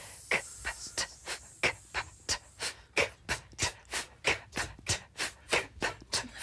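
A group of choir singers doing a breathing warm-up: short, sharp hissed exhales ('tss') in a steady rhythm of about three a second.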